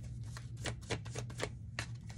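Tarot cards being handled and laid down on a wooden table: about ten light, irregular clicks and taps.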